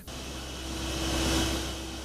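Underground mine machinery running: a steady low rumble with a steady hum, under a hissing noise that swells and then eases.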